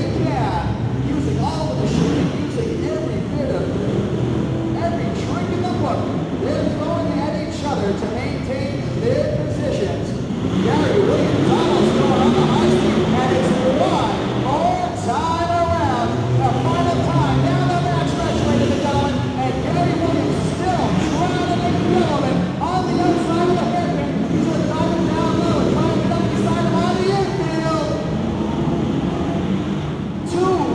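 Several pro-modified off-road race trucks' engines revving, their pitch rising and falling repeatedly as they throttle around an indoor dirt track, over a steady arena din.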